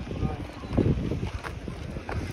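Wind buffeting the microphone: uneven low rumbling gusts, strongest about a second in.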